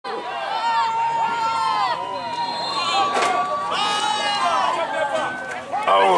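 Several voices shouting at once, overlapping and rising and falling in pitch, with a single sharp crack about three seconds in.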